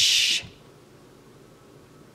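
A woman's voice finishing a word with a hissing "ch" sound for about half a second, then faint room tone.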